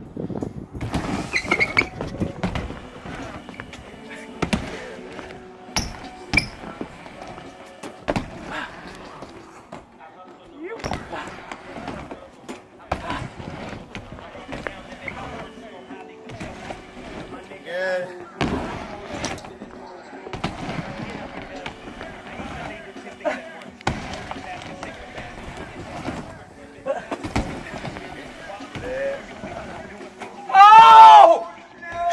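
A BMX bike ridden on a wooden mini ramp: tyres rolling, with repeated sharp knocks as the bike lands and strikes the ramp. There are a few short vocal cries.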